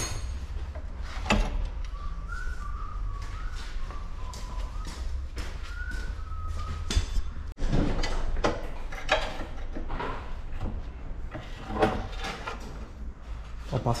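Scattered metal clanks and knocks of a long pry bar levering at the lower control arm's ball joint on a Peugeot 206, the joint stuck tight in the knuckle, over a steady low rumble.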